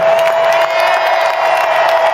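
Large stadium crowd cheering and applauding, with one long steady note sounding over the noise.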